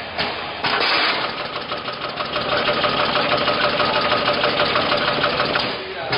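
Coffee capsule bagging machine running, a fast steady mechanical clatter of its pouch-handling mechanisms, with a steady whine joining about a second and a half in and stopping shortly before the end.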